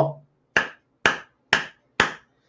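Hands slapping together four times, evenly at about two a second, each a short sharp smack.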